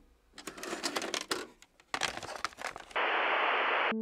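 A VHS cassette is pushed into a VCR's loading slot, and the tape-loading mechanism gives a run of clicks and clunks. In the last second a steady hiss replaces them.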